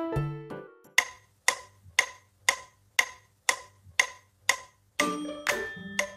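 Electronic keyboard notes die away about a second in. Then an electronic metronome ticks evenly, two clicks a second, eight times. Keyboard notes start again near the end.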